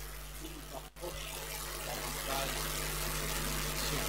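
A pause between spoken phrases: steady hiss and low electrical hum from the microphone and sound system, with a momentary dropout just before one second in.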